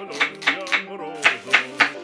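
Chef's knife chopping an onion on a wooden cutting board, about four sharp strokes a second, over background music.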